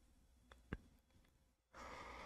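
Near silence with a short sharp click just under a second in, then a soft breathy exhale near the end.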